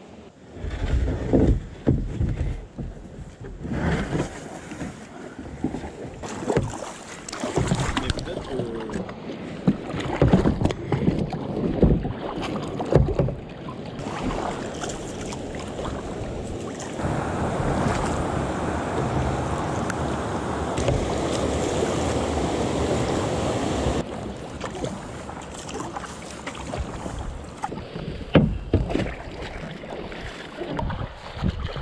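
Kayak paddle strokes splashing and water sloshing against a WaveHopper kayak's hull, in uneven bursts. Partway through comes a steadier rush of water lasting several seconds as the kayak runs through a shallow riffle.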